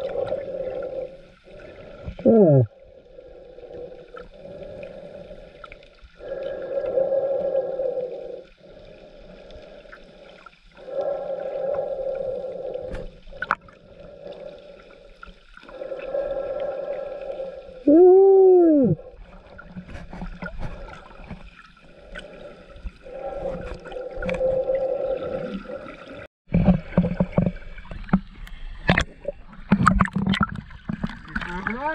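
Muffled underwater sound picked up by a submerged camera in shallow sea water: swells of murky water noise that come and go every few seconds. Two brief gliding tones rise and fall, the louder one just past the middle.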